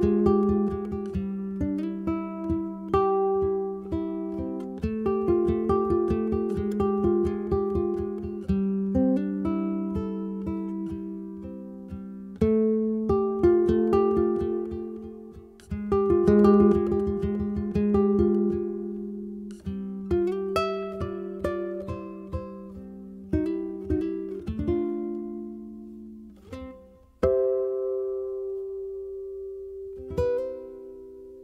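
Ko'olau CE-1 custom electric tenor ukulele played fingerstyle: a quick run of plucked melody notes and chords, thinning to a few chords near the end, the last one left ringing.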